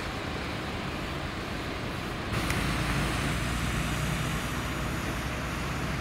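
VW T3 crew-cab pickup fire vehicle driving slowly past, its engine running with tyre and road noise, louder from about two seconds in as it comes closest.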